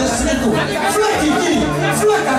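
Several people talking at once: a chatter of voices.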